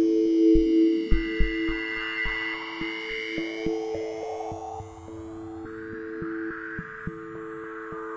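Electronic music with low kick thumps under two steady held tones, and high thin tones that glide slowly down and then back up.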